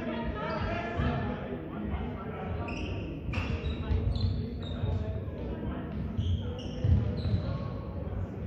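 Players' sneakers squeaking and feet thumping on a sports-hall floor as they run and cut, with players' voices calling, all echoing in the large hall.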